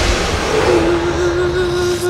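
Film-trailer soundtrack over a title card: a fading rumbling hiss left over from a boom, then a single steady held note that comes in about two-thirds of a second in.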